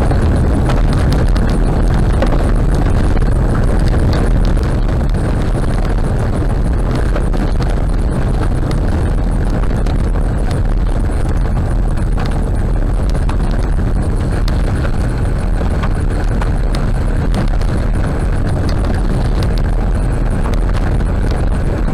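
Road noise of a car driving on a gravel road, heard from inside the car: a steady loud rumble of tyres on loose gravel, with many small irregular clicks and rattles throughout.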